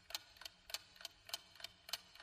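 Clock-ticking sound effect of a quiz countdown timer: a faint, even tick-tock, about three ticks a second, alternating louder and softer, marking the answer time running out.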